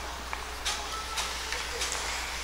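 Ice hockey play at the rink: hockey skates scraping the ice in a few short strokes over a steady low hum.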